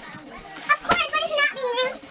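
Indistinct high-pitched voices with no clear words, and one sharp click just before the one-second mark.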